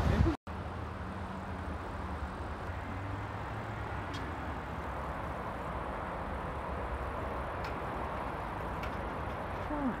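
Steady outdoor background noise, a low rumble with hiss, after a brief dropout about half a second in, with faint voices in the distance.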